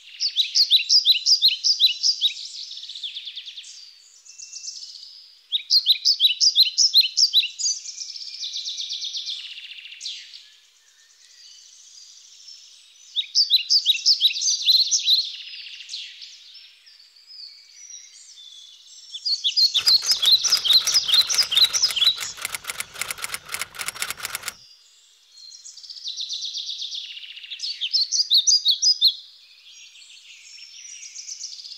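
Birds chirping in repeated bursts of quick, high trills a few seconds apart. Past the middle, a rapid clicking rattle runs for about five seconds.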